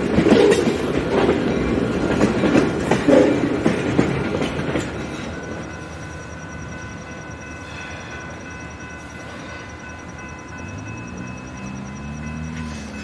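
Freight cars rolling past close by, their steel wheels clacking and rumbling over the rail, loudest in the first five seconds. The sound then falls to a fainter, steadier rolling rumble with a few thin high steady tones, and a low drone starts near the end.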